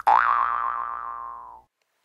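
A cartoon 'boing' sound effect: one springy tone that swoops up quickly in pitch, wobbles, and fades out over about a second and a half.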